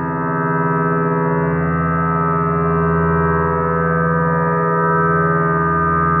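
Sustained electronic drone music: many steady layered tones held together, with strong low pitches under a dense band of higher ones, swelling slightly in loudness about half a second in.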